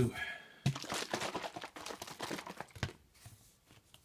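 Rustling, crinkly handling noise, starting just under a second in and lasting about two seconds, as a plastic squeeze bottle is handled.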